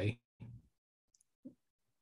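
A man's voice trailing off at the end of a sentence, then a near-silent pause broken by two faint, brief clicks.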